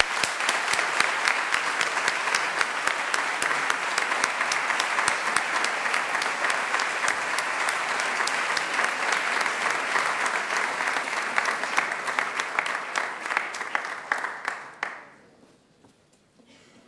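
Audience applauding steadily, with many hands clapping, fading out about fifteen seconds in.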